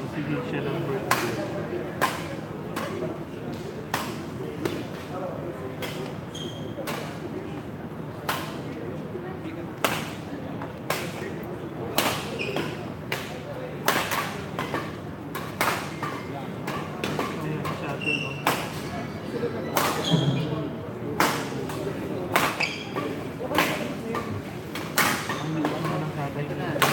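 Badminton rackets striking a shuttlecock in a doubles rally: sharp, irregular smacks every second or so, over the steady chatter of spectators.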